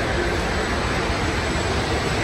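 Steady, even rushing noise, a little loud, from the mall's ceiling air ducts blowing as the Ferris wheel car passes close beside them.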